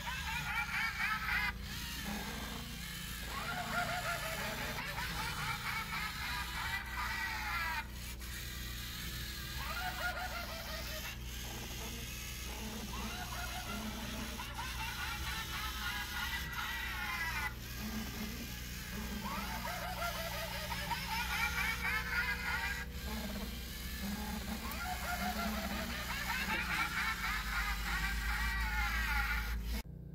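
A spooky witch sound file of cackling laughter, played from the LEGO Mindstorms EV3 brick's speaker, repeating in bouts every few seconds.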